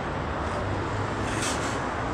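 Steady city traffic noise: a continuous hum of passing vehicles.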